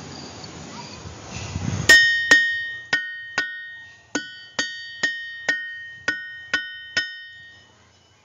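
A boulder from the Ringing Rocks Park field struck with a hammer about a dozen times, roughly twice a second. Each blow gives a clear, bell-like ringing tone that slowly fades, the stone's own resonance. Before the first blow there are about two seconds of faint rustling.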